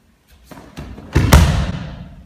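An aikido partner's body hitting tatami mats in a breakfall after a throw: a rustle of cloth building from about half a second in, then one loud thud a little past the middle that fades away.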